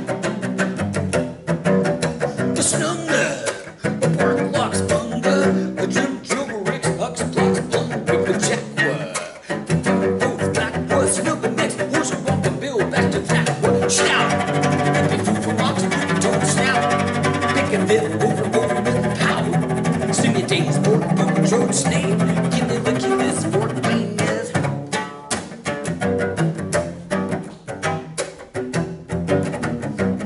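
Solo acoustic cello played with the bow in fast bouncing strokes, a rapid chain of short percussive notes. In the middle stretch there are longer-held notes and chords.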